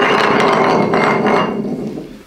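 Glass bottle spinning on a ceramic tile floor, a continuous rattling clatter that fades as the bottle slows to a stop near the end.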